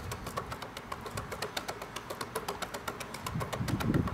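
A basketball tapped rapidly back and forth between the fingertips overhead: a quick, even run of light slaps.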